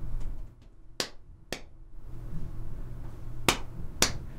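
Three short, sharp clicks of hands meeting, two about half a second apart around a second in and one near the end, as the palms come together to sign BOOK, over a low steady hum.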